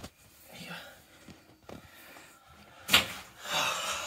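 A single sharp knock about three seconds in, followed by a short rustling scuffle, over faint handling noise.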